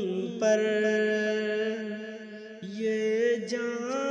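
Wordless male voice humming a slow naat melody in long held notes, with a brief dip about two and a half seconds in before the next note.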